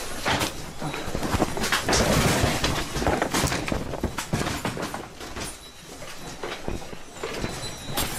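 Dense, irregular rattling and knocking of objects and the building shaking in a strong earthquake, over a low rumble, recorded handheld in the dark.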